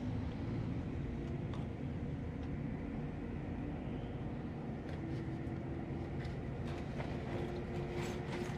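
Inside a Scania K410IB double-decker coach moving slowly: the rear diesel engine runs with a steady low rumble under road noise, and a faint steady hum joins about halfway through.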